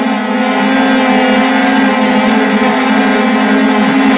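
Orchestral string section holding a loud, sustained chord, swelling slightly about half a second in.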